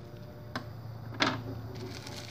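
Bubble wrap and packing tape on a taped parcel crinkling as fingers pull at the wrapping: a small click, then a short crackle a little after a second in, over a steady low hum.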